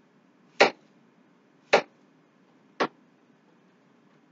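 A kitchen knife chopping zucchini on a cutting board: three separate, sharp chops about a second apart.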